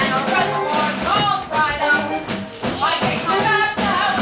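Live musical-theatre number: several cast members singing together over an accompanying band.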